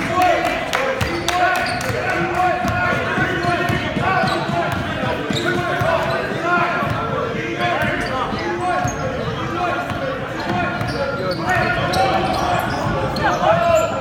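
Live basketball play echoing in a gymnasium: a ball bouncing on the hardwood floor, sneakers squeaking, and players' and spectators' voices.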